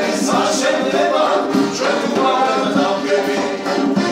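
Several men singing a song together, accompanied by accordion and acoustic guitar.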